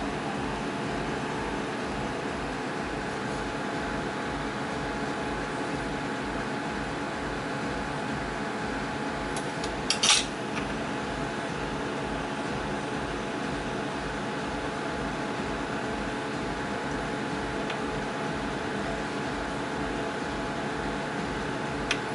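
A steady machine hum with a low, regular throb underneath, and a single short clink about ten seconds in.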